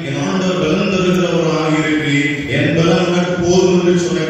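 A man's voice chanting in a sung style, holding each note about a second and gliding between pitches.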